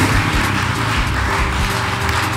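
A crowd applauding over the low running of a BMW R nineT's boxer twin engine as the motorcycle is ridden along.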